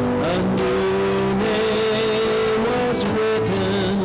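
Live church worship band playing between sung lines: keyboard accompaniment with a saxophone playing the melody in long held notes.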